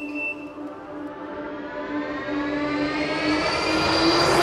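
A synthesized riser in an electronic music track: a cluster of stacked tones sweeping slowly upward over a held low tone, with swelling noise, growing louder toward the end.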